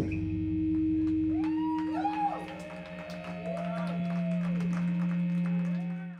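A live band's amplified instruments sustaining a low droning chord as a song ends, with higher tones that slide up and down in pitch over it and faint scattered clicks. The sound drops away at the very end.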